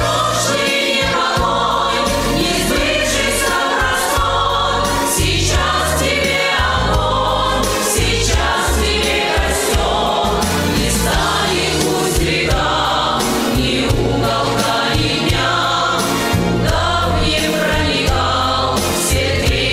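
Women singing a song into handheld microphones over instrumental accompaniment, amplified through a sound system.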